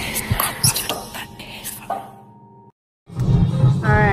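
Intro music with a whispering voice, fading out over the first two and a half seconds. A moment of dead silence follows, then a low car-cabin rumble starts near the end.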